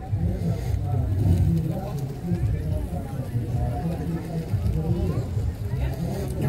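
Indistinct speech at a moderate level over a steady low background rumble.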